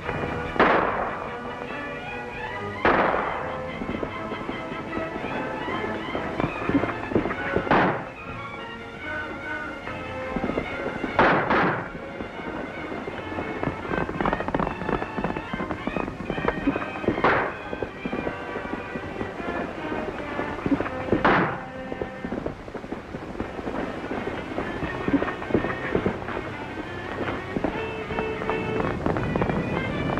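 About six single gunshots, a few seconds apart, each a sharp bang with a ringing tail, over background music.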